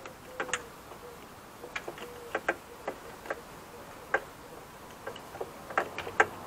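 Irregular sharp plastic clicks and light knocks as a Mercedes-Benz W203 rear door lock and its release cables are handled and fitted inside the bare door shell, about ten in six seconds.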